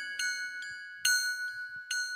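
Chime notes in a hip-hop backing track, struck singly a few times, each bright note ringing on after the strike.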